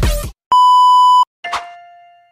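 Electronic intro music cuts off, then a steady electronic beep sounds for under a second, followed by a single struck piano-like note that rings and fades.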